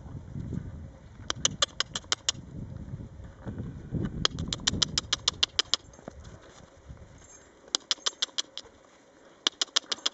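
Several short runs of rapid, evenly spaced clicks, about eight a second, over a low rumbling noise that fades about halfway through.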